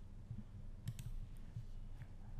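Computer mouse button clicking: two quick clicks close together about a second in and a fainter one near the end, over a faint low hum.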